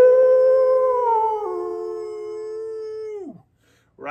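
A man imitating a wolf howl with his voice: one long held "ooo" note that steps down a little in pitch partway through, then slides down and stops about three and a half seconds in.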